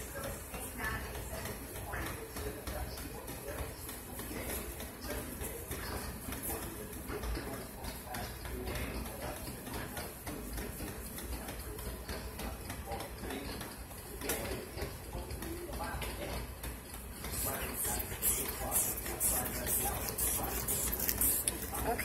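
Indistinct voices talking in the background throughout, with a run of crackling clicks in the last few seconds.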